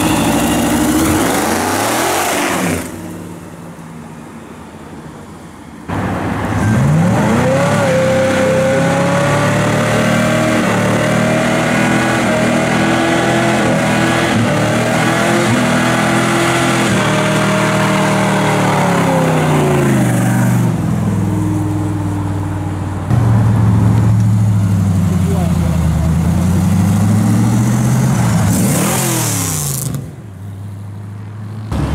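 American muscle-car engines revving hard during burnouts, one car after another, held at high revs for long stretches while the rear tyres spin. There is a quieter stretch a few seconds in, then about fifteen seconds of sustained high revving.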